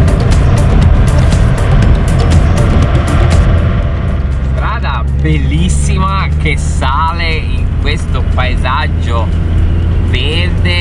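Music with a steady beat for the first three seconds or so, giving way to the steady drone of a camper van's engine and road noise heard from inside the cab while driving, with voices talking over it.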